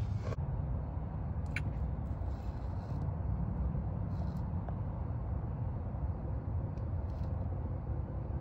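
Steady low rumble of background noise with no clear pitch, and a faint click about a second and a half in.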